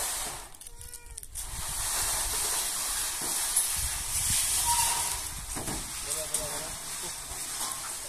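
Long corrugated metal roofing sheets sliding and scraping along a pickup's roof rack as they are pulled off, a steady hissing scrape that breaks off briefly about a second in.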